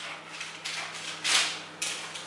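Hands pressing and stretching pizza dough across a parchment-lined baking tray: three short rustles and scrapes of the paper and dough, the loudest about a second and a half in, over a faint steady low hum.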